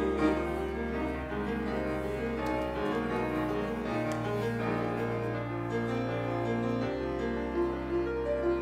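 Grand piano playing an instrumental interlude between sung verses of a choral hymn, a run of moving notes over long-held bass notes, with the choir silent.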